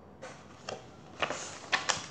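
A paperback book being handled and turned around: a few irregular sharp clicks and short paper rustles, the loudest two near the end.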